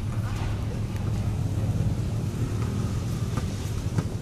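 A steady low rumble, with faint shouting voices over it.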